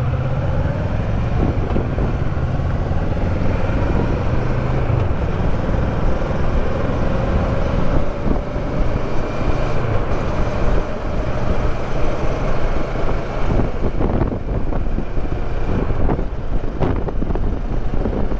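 Kawasaki Versys 650's parallel-twin engine pulling away and accelerating, its pitch rising slowly over the first several seconds, then running at road speed. Wind buffets the helmet-mounted microphone more in the last few seconds.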